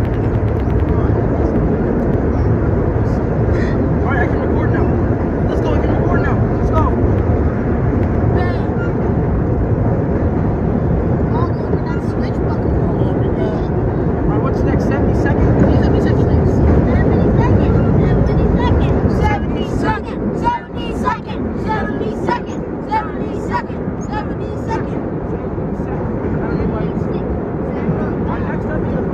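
A 1932 R1 subway car running through a tunnel: a loud steady rumble of traction motors and steel wheels on rail. About two-thirds of the way through the rumble eases, with sharp clicks and short squeals from wheels and rail, as the train slows coming into a station.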